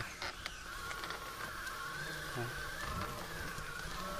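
Electric skateboard motor whining at a steady, slightly wavering pitch as the board rolls slowly over a dirt track, with scattered small clicks from the wheels on grit.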